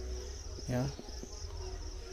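Insects trilling steadily in a high, rapid, pulsing chirr, over a low rumble.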